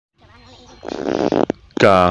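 A raspy buzzing sound lasting about half a second, then a sharp click. Near the end a man's voice starts speaking Khasi.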